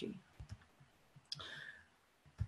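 Faint clicks and soft low knocks: a couple of dull knocks under half a second in, then one short sharp click about a second in.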